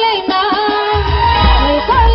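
A woman singing a film-style song through a stage PA, with instrumental accompaniment; a heavy bass drum beat comes in about halfway.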